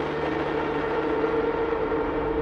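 Trailer sound-design drone: a loud, dense rush of noise with a steady held tone running through it, held unchanging.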